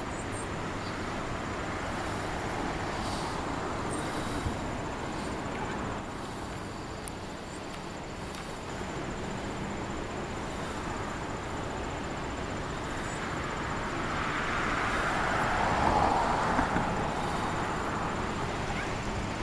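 Steady outdoor background noise, a rushing hiss that swells for a few seconds near the end, with faint high chirps above it.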